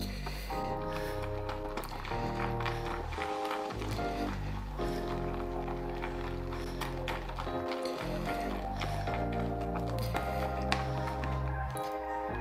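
Background music of held, changing chords. Faint clicks and taps from a shaving brush being worked in a ceramic lather bowl sit underneath.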